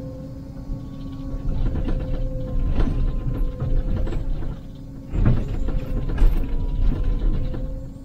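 Liebherr 904 wheeled excavator's diesel engine and hydraulics running with a steady whine, heard inside the operator's cab, while the bucket scrapes and knocks against solid rock. The louder knocks come about three seconds in and again between five and six and a half seconds.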